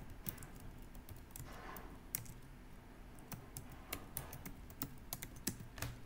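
Computer keyboard typing: quiet, irregularly spaced key clicks as a line of code is entered.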